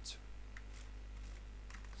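A few separate keystrokes on a computer keyboard as code is typed, over a steady low hum.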